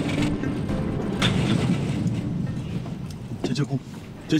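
A car engine running under background music; both fade away about three seconds in.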